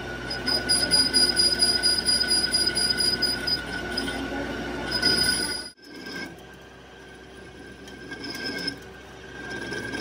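Metal lathe cutting a steel drive-shaft tube, the turning tool giving a steady high-pitched squeal over the machine's hum. The sound cuts out abruptly a little past halfway, then resumes with a slightly higher whine.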